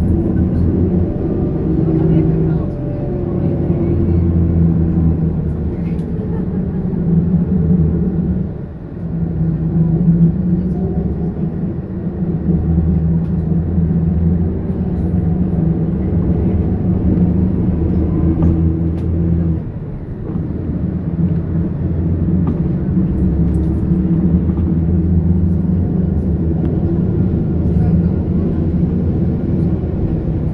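A road vehicle's engine running steadily under load while climbing, heard from inside the cabin, with road noise. The engine note drops briefly about a third of the way in and again about two-thirds of the way in.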